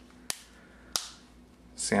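Plastic battery cover of a Samsung Vibrant smartphone snapping back into place, two sharp clicks a little over half a second apart as its clips catch.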